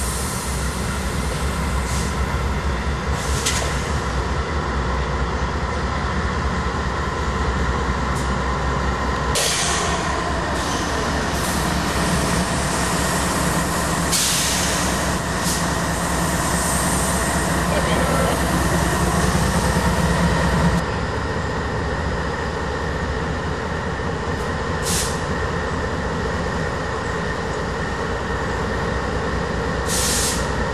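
Two CSX GE AC44CW diesel-electric locomotives, each with a 16-cylinder GE diesel engine, running under power as they move slowly past at close range. Their engine note rises and grows louder about a third of the way in, then drops back suddenly about two-thirds of the way through. Several short sharp noises are heard along the way.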